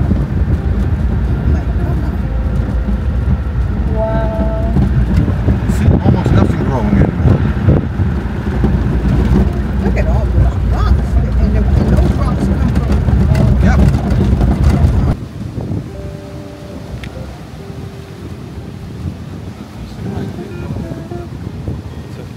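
Inside a vehicle driving on an unpaved dirt road: a loud, steady low rumble of engine and tyres with scattered rattles and knocks. About fifteen seconds in it cuts off suddenly, leaving a much quieter background with a few faint steady tones.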